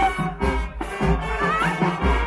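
High school marching band playing: brass melody with rising pitch slides over a steady beat of drums and low brass.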